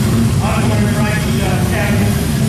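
People talking over a steady low rumble.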